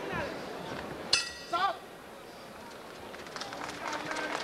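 Arena crowd noise with a single sharp metallic clang of the boxing ring bell about a second in, marking the end of the round; a voice calls out briefly just after.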